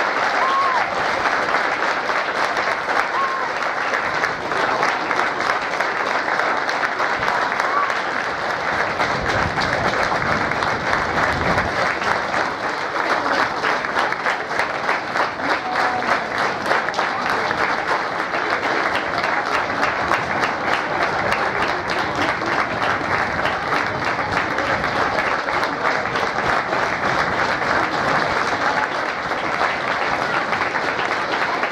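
Football crowd and match officials applauding, with many hands clapping in a dense, steady round of applause that does not let up.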